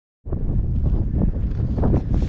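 Wind buffeting the microphone: a loud, rough low rumble that starts about a quarter of a second in.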